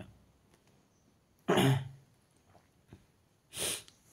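A person coughs once, sharply, about one and a half seconds in, and makes a shorter breathy sound near the end.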